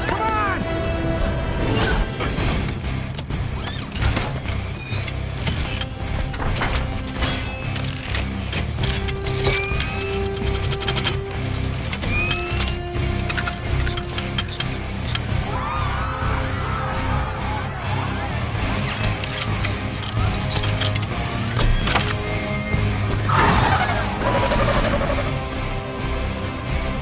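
Movie soundtrack of a robotic armour suit assembling around its wearer: rapid metallic clicks, clanks and whirs as plates unfold and lock into place, over a dramatic film score with occasional crashes.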